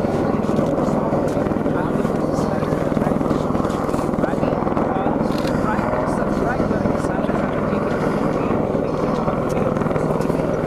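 Helicopter flying, a steady, loud rotor and engine noise.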